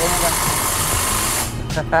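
A steady hiss lasting about a second and a half, then stopping abruptly.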